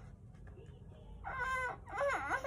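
A young child's whining cry: one drawn-out, high-pitched wail starting a little past halfway through.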